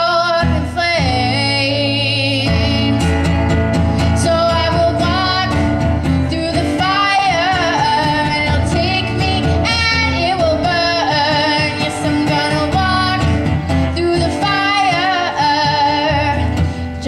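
A girl singing a slow melody with long, wavering held notes, over steady guitar chords.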